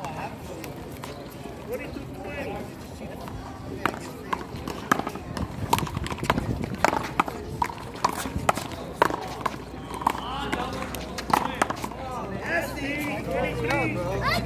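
One-wall handball rally: a small rubber ball slapped by gloved hands and hitting the concrete wall, as a run of sharp, irregular smacks from about four seconds in until near the end, with players' sneakers scuffing and running on the court.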